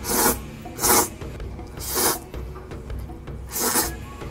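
A person slurping thick mazesoba noodles from chopsticks, four loud, quick sucking slurps about a second apart.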